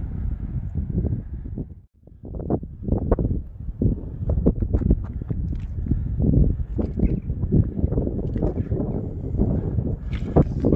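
Wind rumbling on the microphone with irregular footsteps on a rough clifftop path, briefly cut off about two seconds in.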